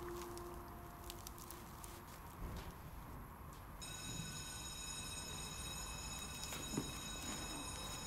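School bell ringing: a steady, faint, high electric ring that starts about four seconds in and keeps going.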